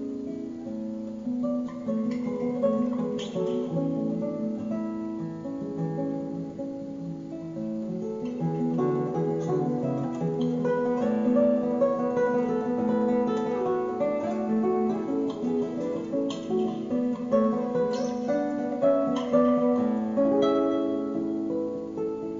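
Solo classical guitar played fingerstyle: a continuous melody over plucked bass notes.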